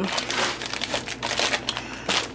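Plastic bags of riced cauliflower crinkling as they are handled and moved, an irregular run of crackles that eases off toward the end.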